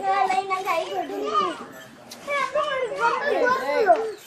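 High-pitched children's voices talking and calling out, pausing briefly about halfway through.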